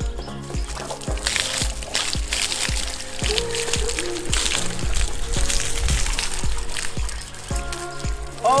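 Background music with a steady beat about twice a second. Under it, a bucket of water is poured into a nearly full plastic drum, splashing and gurgling, loudest around the middle.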